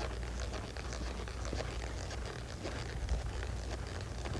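Faint, irregular hoofbeats of a horse loping on soft arena dirt, over a low steady hum.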